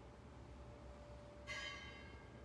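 Metal altar vessel clinking once about a second and a half in, a short bright ring that fades, as the chalice is handled and cleaned at the altar.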